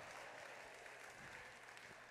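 Faint applause from the congregation, fading away.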